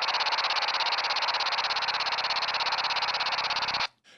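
A DMR digital radio signal played through a handheld analog FM receiver: a harsh buzz of digital noise pulsing rapidly and evenly, the on-off switching of DMR's time slots, which cuts off suddenly just before the end.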